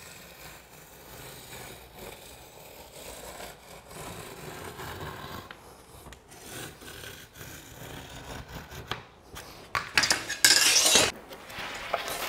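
A 1½-inch Hydro-Blok foam building panel being cut through by hand, a quiet, steady rubbing scrape. About ten seconds in it turns into a louder, harsher scrape lasting about a second.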